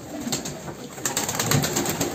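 A flock of domestic pigeons with soft low coos, among a rapid scatter of short clicks and a wing flutter.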